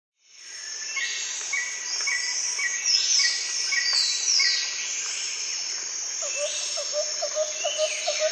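A flock of monk parakeets calling, fading in at the start: harsh, downward-sweeping squawks over short chirps repeated about twice a second. From about six seconds in, a lower note repeats about three times a second.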